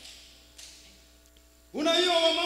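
Pause in amplified preaching in a large hall: the echo of the voice dies away over a faint steady hum from the sound system, and the preacher's voice comes back near the end on a long held word.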